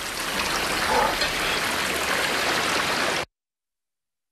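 Kitchen faucet's pull-out sprayer spraying water out of control: a steady hiss of spraying water that cuts off abruptly into dead silence a little after three seconds in.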